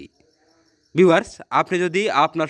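About a second of near silence, then a man's narrating voice starts again.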